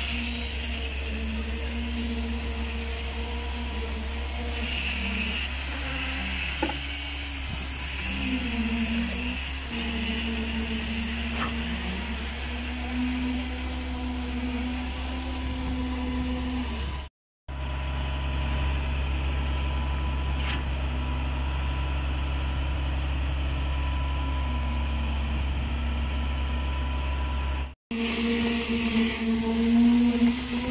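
Concrete pump truck running steadily while it pumps concrete through the boom hose: a continuous low engine drone with a humming tone above it that wavers in pitch. The sound cuts out briefly twice.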